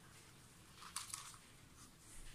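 Two quick, sharp clicks close together about a second in, from a single-phase RCCB being trip-tested by touching its wire to a 1.5 V AA battery.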